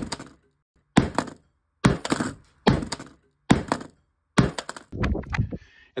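Heavy blows on a hard drive lying on a wooden table, about seven sharp thunks roughly one a second, each with a short ring, the fifth and sixth coming as a quick cluster of knocks. The drive is being smashed at its centre hub so that its data can no longer be read.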